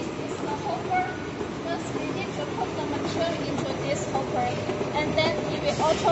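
Steady low machinery noise from packaging machines in a factory workshop, with indistinct voices talking in the background.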